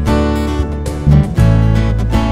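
Live band music: strummed acoustic guitars over a deep electric bass line that changes note every half second or so, with keyboard.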